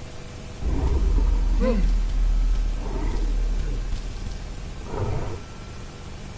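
A deep rumbling roar with wavering cries over it, a monster sound effect likened to Godzilla. It starts about half a second in, eases after about four seconds, and swells again briefly near the end.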